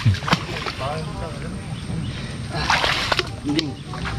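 Legs wading through shallow muddy mangrove water, sloshing and splashing, with a louder splashy stretch about three seconds in.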